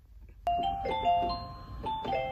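Brief quiet, then about half a second in a chiming, bell-like melody of single held notes starts on an electronic keyboard.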